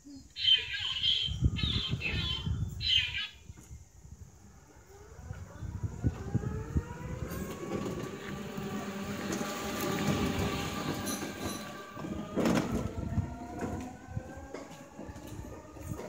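Electric three-wheeler's motor whining, rising in pitch as it picks up speed and then holding steady. Near the start there are three short bursts of noise, and a single thump comes later on.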